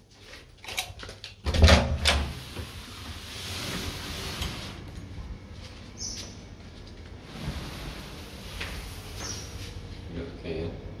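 A room door being worked: clicks of the lever handle and latch, then the door is opened and shut with a loud thud about two seconds in. After that comes a steady hiss of open air with a few light footsteps.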